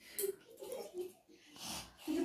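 A person's faint breathy sounds and soft murmured voice, with a louder breath near the end.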